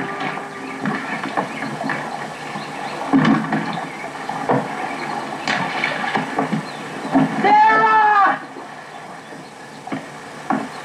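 Rustling and snapping of branches and debris underfoot, then about seven and a half seconds in a goat bleats once, a wavering call about a second long.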